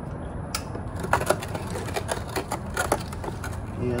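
Small irregular clicks and knocks from a removed drain bolt being handled, a quick run of them starting about a second in and stopping just before the end.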